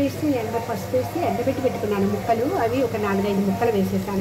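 A woman talking, over a steady low hum.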